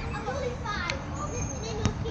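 Children's voices calling out and chattering as they play, with a couple of sharp basketball bounces on the asphalt court, one about halfway through and one near the end.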